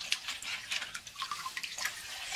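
Water splashing and trickling as hands wash bamboo shoots in a steel basin of water under a running tap: a stream of irregular small splashes and drips.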